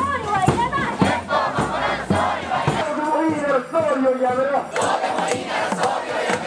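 Large protest crowd chanting in unison to a steady beat of about two strokes a second. Partway through the beat stops and the chanting voices carry on.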